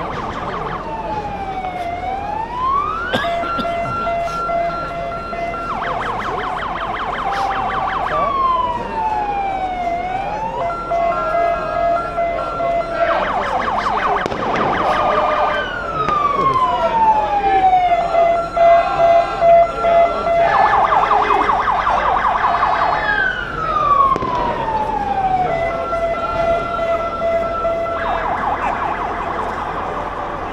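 An electronic siren sounding loudly and cycling through its modes again and again: a falling wail, then a steady pulsing tone, then a fast warble, repeated several times.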